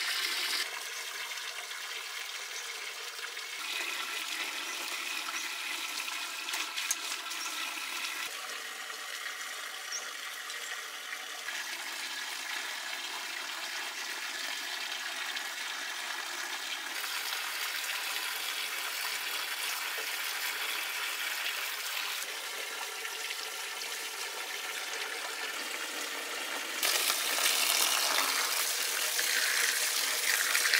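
Stream of water pouring steadily into a bamboo basket of small fish and splashing over them as hands rub the fish clean. The sound gets louder for the last few seconds.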